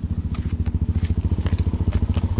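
A Suzuki LT-Z400 quad's single-cylinder four-stroke engine idling, with a steady, fast, even pulse.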